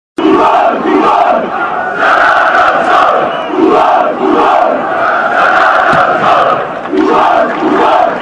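Large crowd of Croatian football supporters chanting together in unison. The chant starts abruptly just after the opening and rises and falls in loud rhythmic waves.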